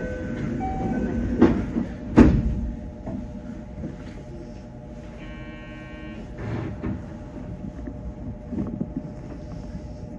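Stationary electric commuter train at a station platform with a low steady rumble, two thuds about one and a half and two seconds in, the second the louder, and a short buzzing electronic tone lasting about a second past the middle.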